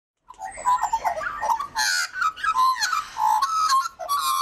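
Bird calls: a busy run of varied chirps and warbling whistles, with a harsher squawk about two seconds in.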